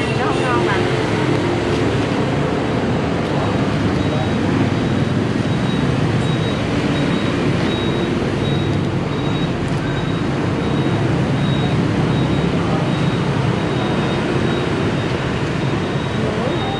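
Steady, dense street-traffic noise from a busy road, with voices in the background.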